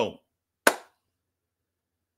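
The tail of a spoken word, then a single sharp hand clap about two-thirds of a second in, dying away quickly.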